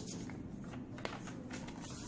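Faint handling of a paper word card being lifted and turned over, with a light tick about a second in, over a low steady room hum.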